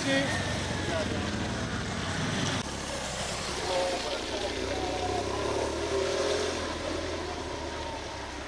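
A motor vehicle engine running steadily, with voices of people in the background; the sound changes abruptly about two and a half seconds in.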